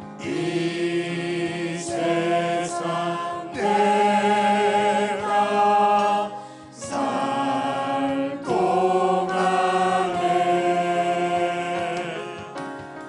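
A hymn sung slowly by a group of voices with organ accompaniment, in long held phrases with short breaks between them.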